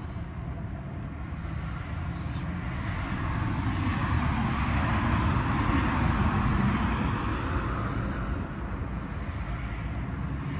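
Engine noise of a passing motor vehicle, swelling over several seconds to a peak about halfway through and then fading away.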